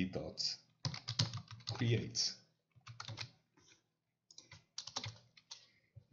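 Computer keyboard typing: quick runs of keystrokes in three short bursts, with brief pauses between them.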